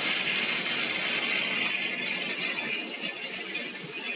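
Steady hissing factory-floor noise beside a sintering furnace in a powder-metal parts plant, with a couple of faint clinks; it eases slightly toward the end.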